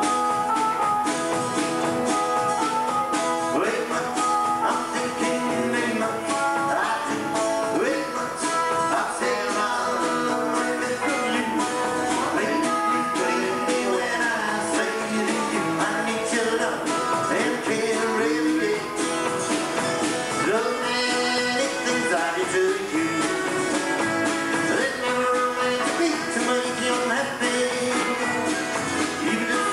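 Country band playing a song live, with singing over strummed acoustic guitar, electric guitar and drums.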